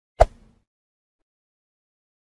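A single sharp tap-click sound effect for a button press, with a short tail, about a fifth of a second in; otherwise silence.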